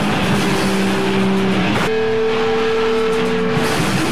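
Noisecore recording: a loud, dense wall of distorted noise with a low held drone that switches about halfway through to a higher held tone, which drops out near the end.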